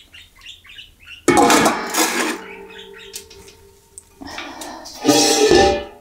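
Stainless steel stockpot being handled: a loud metallic clatter about a second in leaves the pot ringing with a steady tone, then a second, longer scraping clatter comes near the end.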